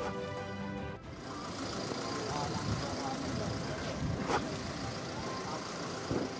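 Street ambience of a gathered crowd and road vehicles, with indistinct voices and traffic noise under soft background music. A single sharp knock sounds about four seconds in.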